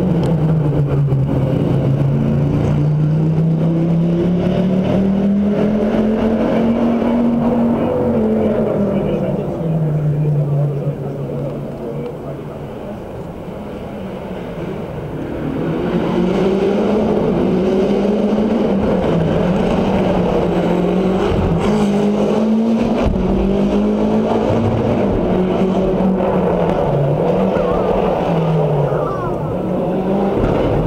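Rally car engines revving and changing gear as they drive past. First is an Audi Quattro with its turbocharged five-cylinder, its pitch rising and falling with each gear. After a quieter spell about halfway through, a second car revs up and down in the same way.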